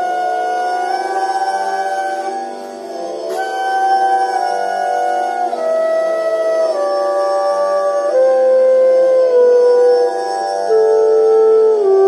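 Bamboo bansuri flute in G scale playing slow, held notes over a steady tanpura drone tuned to G. After a short break about three seconds in, the flute steps down the scale one note at a time, each held about a second.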